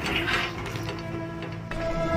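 A run of irregular mechanical clicks and rattling, like a small mechanism being worked, with faint steady tones under it.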